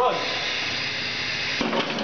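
Steady hiss of compressed air as a steel-drum dedenter's pneumatic cylinders close its clamping shell around the drum, with a few knocks near the end as the shell comes shut.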